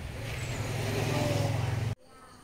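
A motor vehicle's engine running with a steady low hum, growing louder, then cutting off suddenly at the end.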